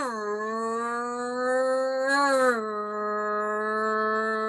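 A woman's voice holding one long, steady "rrrr" sound, the letter R's sound, made to imitate a race car engine. It swells and rises in pitch briefly about halfway through, then settles back to the same note.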